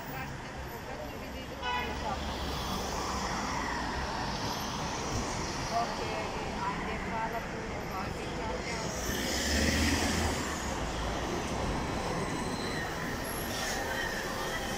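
City street traffic: cars and buses moving through a crossing with a steady low rumble of engines and tyres. It gets louder about ten seconds in as a vehicle passes close.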